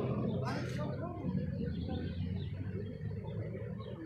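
Faint voices of people talking nearby over a steady low hum, with a short noise about half a second in.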